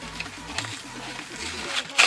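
Cardboard and plastic blister-pack packaging being torn open by hand, with scattered rustling and a sharp, louder rip near the end.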